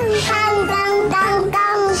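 A young child singing loudly in long, held, wavering notes.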